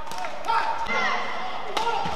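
Badminton court sounds in an indoor hall: shoes squeaking on the court mat about half a second in, and two sharp knocks, one at the start and one near the end.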